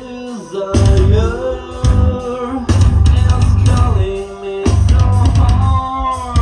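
A metal band playing live: distorted electric guitars, bass and drums in a stop-start riff that cuts in suddenly three times, with short breaks between where the singer's held notes carry on.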